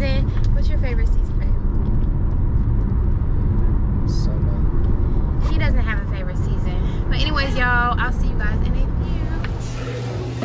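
Steady low road and engine rumble inside a moving car's cabin. A woman's voice talks over it briefly near the start and again in the second half.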